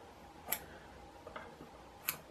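Quiet room tone with one sharp click about half a second in and a fainter tick later: small handling sounds of tools at a fly-tying vise.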